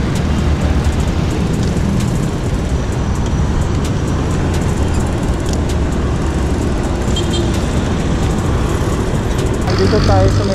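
Steady city traffic noise from a bicycle ride alongside jeepneys and buses, with wind rushing over the camera microphone.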